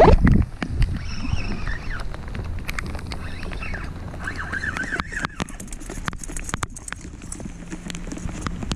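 Wind rumbling on the microphone with a loud knock on the camera at the start, then many irregular sharp ticks and taps as a fish is reeled in on a spinning rod in the rain.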